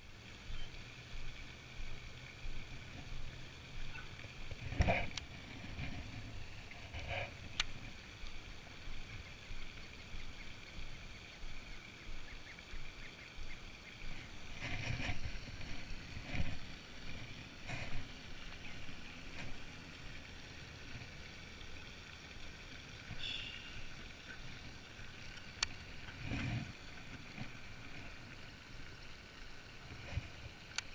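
Quiet pond-side background hiss with soft, scattered handling knocks from a baitcasting rod and reel as a lure is worked; a few knocks stand out, about five, fifteen and twenty-six seconds in.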